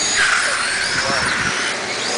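Radio-controlled Formula 1 model cars racing, their motors whining high and rising and falling in pitch as they speed up and slow for the corners, over a steady rushing noise.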